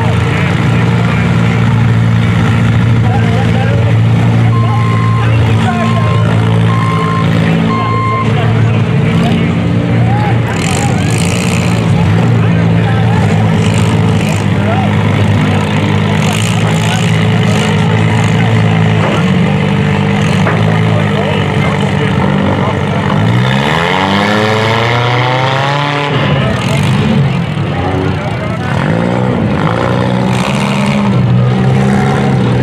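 Several modified front-wheel-drive cars' engines run together at low revs, with a few sharp bangs. About three-quarters of the way through, one engine revs up hard in a rising whine for a couple of seconds.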